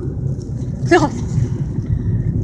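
Car cabin noise, a steady low rumble of the car on the road, with a brief voice sound about a second in.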